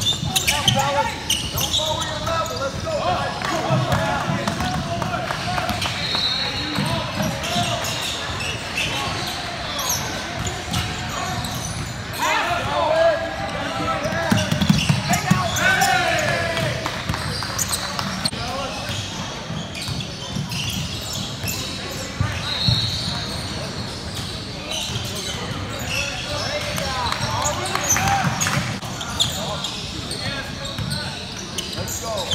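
Basketball game on a hardwood gym floor: the ball dribbled and bouncing, with indistinct shouts and calls from players and the sideline, echoing in a large gym. Two brief high squeaks, about six seconds in and again past twenty seconds, typical of sneakers on the court.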